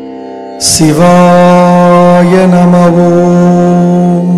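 Devotional mantra chant music: a steady drone, joined a little over half a second in by a loud, long held tone that lasts to the end.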